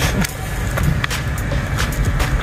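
Gloved hands rummaging in a muddy metal cash box, with scattered scrapes and clicks, over a steady low rumble.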